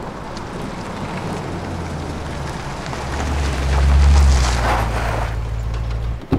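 A car driving slowly past at low speed: a low engine hum with tyre noise on pavement, swelling loudest about three to four seconds in as it comes closest, then easing off.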